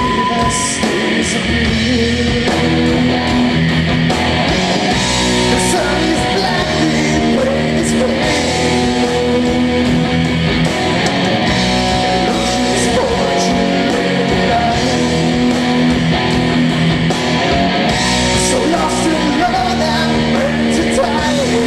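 Live rock band playing a song with distorted electric guitars, bass and drums, loud and continuous.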